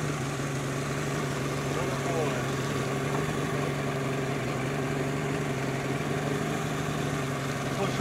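Boat's outboard motor idling steadily, a constant low drone.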